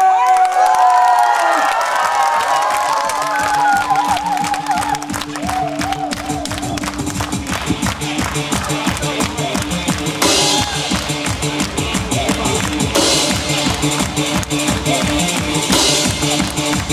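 Korean barrel drums (buk) and a cymbal beaten in a fast, steady rhythm over backing music. Voices shout in the first few seconds, and cymbal crashes come in after about ten seconds.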